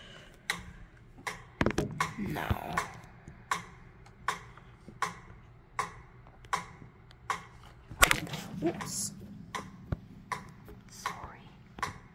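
Metronome ticking steadily at about 80 beats a minute, one click every three quarters of a second. Over it come handling knocks and rustles, the loudest a knock about 8 seconds in.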